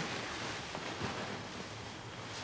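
Quiet room tone: a steady low hiss with a faint hum and a soft click about a second in.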